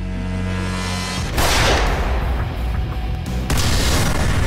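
Film trailer music: a held low bass drone, then two heavy booming hits, each with a rushing swell, the first about a second in and the second near the end.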